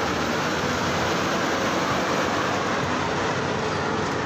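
A bus running, a steady even din of engine and road noise with no breaks.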